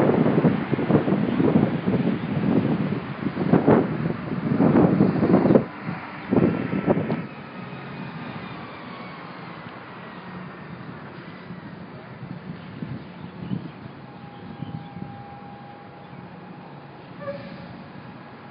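Road traffic passing, loud and uneven for the first several seconds, then settling to a quieter steady hum with a faint falling whine.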